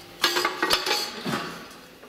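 Metal clinks and knocks as an aerosol spray can is fitted into a metal paint-filling rig. There is a sharp knock about a quarter second in, then a few lighter clicks and clinks that die away.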